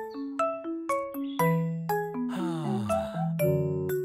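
Cheerful children's cartoon jingle of quick bell-like mallet notes stepping through a melody, with a falling glide about halfway through and fuller chords near the end.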